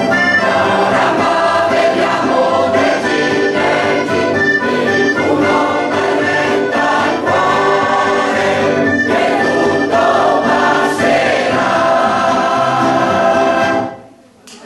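Mixed choir of women's and men's voices singing a song live, with a full, steady sound that breaks off at the very end as the song finishes.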